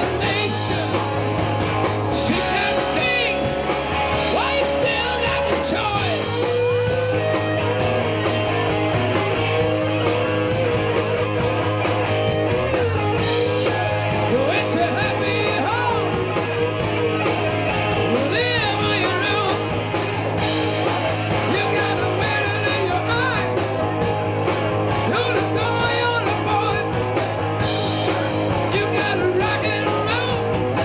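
Live rock band playing a rock-and-roll number: electric guitars, bass guitar and drums, with a male lead singer.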